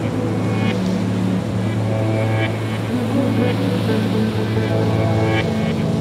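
Background music: an ambient track built on a steady low drone, with held chords that shift every second or two and short bright accents above them.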